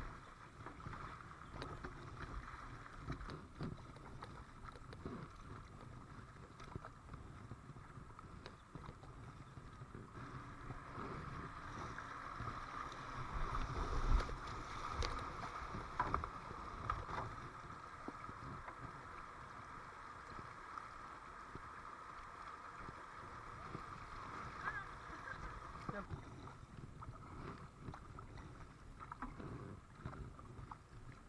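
River water rushing and splashing around a paddled kayak, with the paddle blades dipping into the water. The rush grows louder about halfway through as the kayak runs a rocky whitewater riffle.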